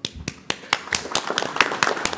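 Audience applauding after a talk: many separate hand claps a second over a steady wash of clapping.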